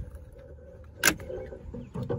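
Plastic interior door trim cover (the triangular mirror sail panel on a 1995–98 Chevy pickup door) popping off its clips, with one sharp snap about a second in, followed by light plastic rustling.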